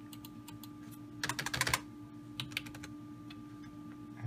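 Computer keyboard typing: a quick run of keystrokes about a second in, then a few scattered key presses, as new size values are entered into the 3D-printer slicing software. A faint steady hum runs underneath.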